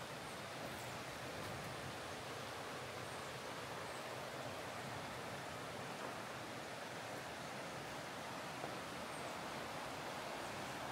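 Steady rush of a shallow, rocky river running over rapids, heard as an even, unbroken hiss.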